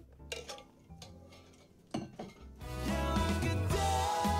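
Soft background piano music with a few short clinks and knocks from a drinking tumbler being handled and put down, then louder music comes in about two and a half seconds in.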